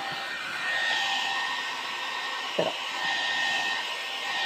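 Electric hot air brush running steadily: an even blowing hiss with a faint high whine held at one pitch.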